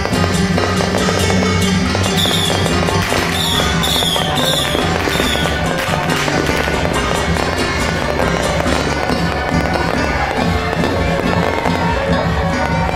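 Fireworks and firecrackers crackling continuously over loud music. Several short falling whistles come between about two and five seconds in.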